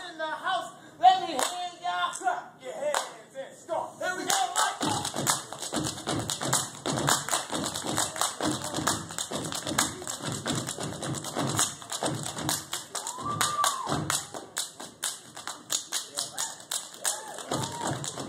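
Step team stepping: feet stomping on a wooden stage and hands clapping and slapping the body in a fast, even rhythm. The first few seconds hold chanted voices before the stomps and claps take over, and a short shouted call rises over them about three-quarters of the way through.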